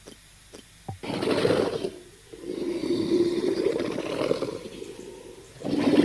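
Hologram dragon sound effects from the HoloLens Actiongram app: a short roar about a second in, then a longer sustained roar from about two and a half seconds in that dies down near the end and picks up again just before it. A few faint ticks come before the first roar.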